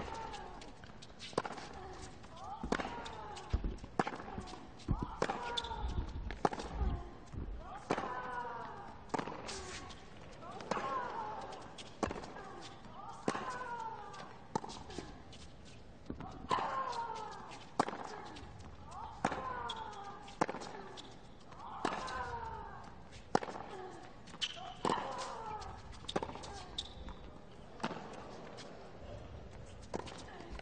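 Tennis ball struck by racquets back and forth in a long rally, one crisp hit about every 1.3 seconds, each hit paired with the hitting player's short grunt that falls in pitch.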